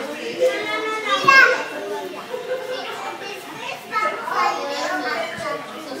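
Two young children talking back and forth in high voices, with one louder, rising exclamation about a second in.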